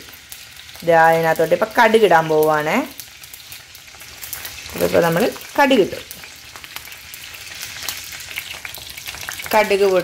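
Coconut oil heating in a pot, sizzling and crackling steadily as it bubbles. A person's voice speaks in two short stretches over it, about a second in and again around the five-second mark.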